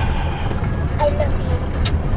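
Car cabin noise while driving slowly: a steady low engine and road rumble heard from inside the car.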